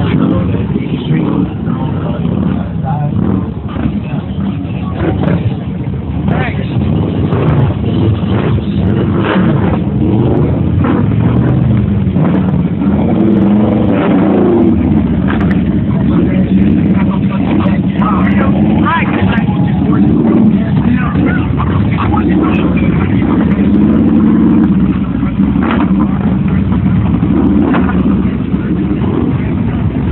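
Large touring motorcycles riding by at low speed, their engines running with some revving.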